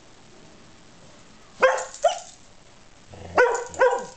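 Rough collie giving short, loud barks in two pairs, the first pair about a second and a half in and the second near the end.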